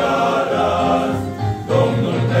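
Men's choir singing in several parts without instruments, holding sustained chords, with a brief break about a second and a half in before the next chord enters with a low bass note.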